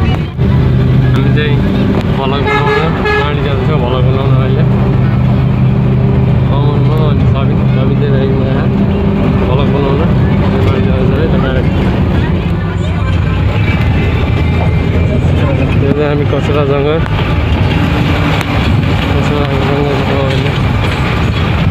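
Bus engine running steadily, heard from inside the passenger cabin, with voices over it now and then.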